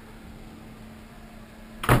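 Steady low hum of the boat cabin's room tone with a faint constant tone, cut near the end by a short, sharp burst of sound.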